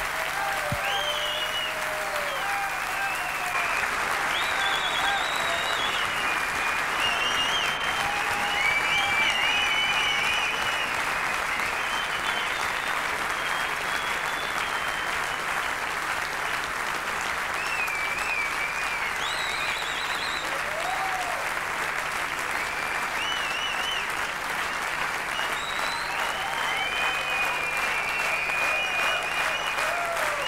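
Concert audience applauding steadily for the jazz quintet, with scattered whistles and shouted calls rising above the clapping.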